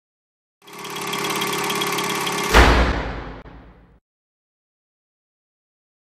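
Opening sound effect: a steady, many-toned drone fades in, then a sudden deep boom hits about two and a half seconds in and dies away until the sound cuts off abruptly.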